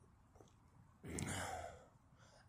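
A person sighing, one audible breath lasting just under a second, starting about a second in.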